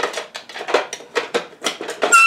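Makeup containers and lids clicking and knocking together as they are handled and put away in a vanity drawer, in a quick run of small hard taps.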